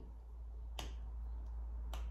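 Two short, sharp clicks about a second apart, over a steady low hum.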